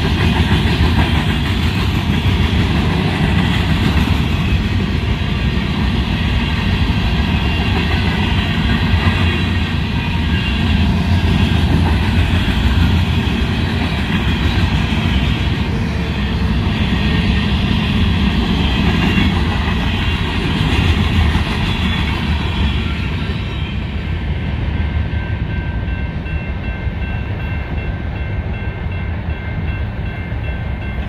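A freight train of covered hopper cars rolling past over the rails with a steady rumble and wheel clatter, while a railroad crossing bell rings on. The train noise falls away in the last several seconds as the end of the train passes, leaving the bell.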